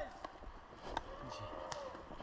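A person's drawn-out wordless vocal sound, one held tone lasting most of a second starting about a second in, with a couple of sharp clicks.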